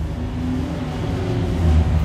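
A low, steady rumble with no speech over it, swelling slightly near the end.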